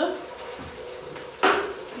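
A single sharp metallic clank of a utensil against a frying pan about one and a half seconds in, ringing briefly, over the low sizzle of peppers frying.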